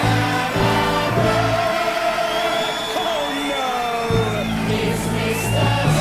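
Stage-musical orchestral music with sustained chords and a gliding melodic line. The low bass notes drop out for a couple of seconds in the middle and come back before the end.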